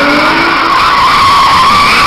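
Car tyres squealing loudly and without a break as the car slides in a drift, a high wavering squeal. Its engine is heard faintly underneath in the first part, rising in pitch.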